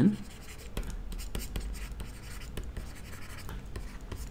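Stylus handwriting on a tablet: a quick, irregular series of short scratches and taps as the letters are written.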